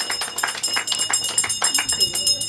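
Audience applauding, a dense scatter of hand claps that thins out near the end.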